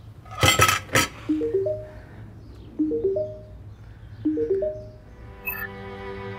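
A few sharp clinks of kitchenware about half a second in. Then a smartphone's incoming video-call ringtone: a short rising three-note chime, played three times about a second and a half apart.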